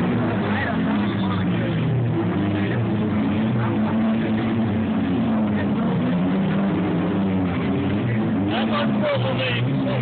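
Engines of several demolition derby cars running and revving together in the arena, loud and steady, their pitches rising and falling against each other, with voices over them.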